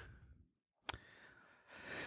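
Near silence, broken by one faint click about a second in and a soft breath near the end.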